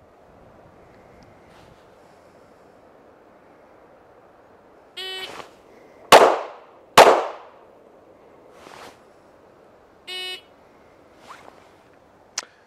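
An electronic shot timer beeps, and about a second later a handgun fires two shots just under a second apart: a controlled pair, the second shot about two seconds after the beep. A second, identical timer beep comes near the end, over a steady outdoor background hiss.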